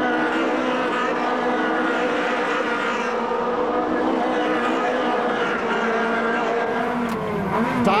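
Ferrari 360 Challenge race cars' V8 engines running hard as a pack goes by, several engine notes held steady together. Near the end a single engine's note rises and falls.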